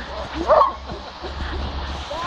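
A dog in bite-work training gives one loud bark about half a second in, followed by fainter short whines and yelps as it pulls on the leash toward the helper.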